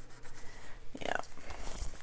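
Fingertips rubbing and pressing a paper sticker flat onto a planner page, a soft papery rubbing.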